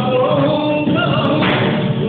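Flamenco tangos music: a singer's long, bending sung lines over guitar accompaniment, with one sharp knock about one and a half seconds in.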